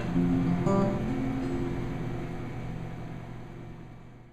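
Acoustic guitar playing a couple of last plucked notes about half a second apart, then the final chord left ringing and slowly dying away.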